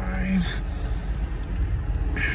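A man's brief closed-mouth hum ("mm") at the start, then a steady low rumble inside a stopped car's cabin.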